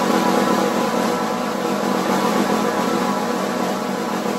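Snare drum press roll, also called a buzz roll or multiple-stroke roll: both sticks are pressed into the head near the rim and the overlapping multiple-bounce strokes merge into a smooth, unbroken buzz at an even level.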